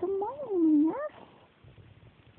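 A three-month-old baby cooing: one drawn-out vocal sound lasting about a second, its pitch rising, dipping and then rising again at the end.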